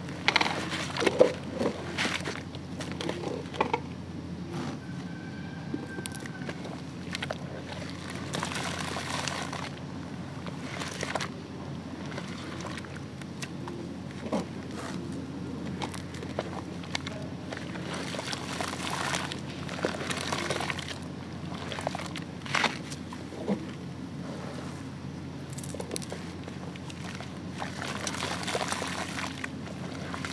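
Gritty concrete chunks crumbling and being mixed by hand in a tub of water: irregular sloshing and crackling, loudest in the first couple of seconds.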